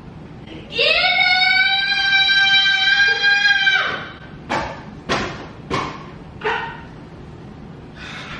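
A toddler's long, steady, high-pitched squeal lasting about three seconds, followed by four short, sharp yelps in quick succession.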